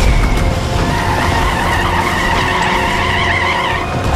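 Car tyres squealing in a long skid, starting about a second in and stopping just before the end, over a heavy low rumble.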